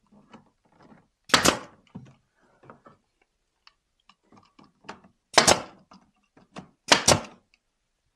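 Nail gun firing three times into cedar picket boards: one shot about a second and a half in, then two more close together near the end. Light knocks and handling of the wood come between the shots.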